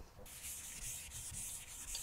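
A handheld eraser wiping a chalkboard: a soft, hissing rub in quick, even back-and-forth strokes.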